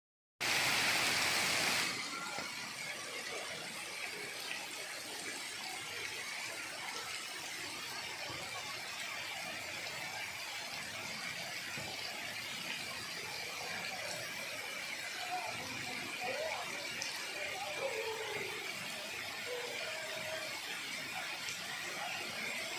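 Steady hiss of arching fountain water jets spraying and falling into the pool, louder for about the first second and a half.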